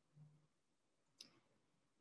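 Near silence with a single faint click about a second in, from paging back through presentation slides.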